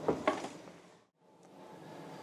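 Faint room noise, with a brief sound at the very start, fades to silence about a second in and then fades back up: the audio crossfade of an edit between two shots.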